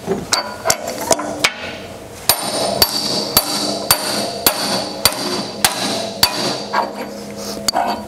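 Hammer blows about twice a second on a bushing installation tool, driving a new poly bushing into the firming wheel arm pivot housing of a John Deere 50 series drill. From about two seconds in, each blow leaves a short metallic ring.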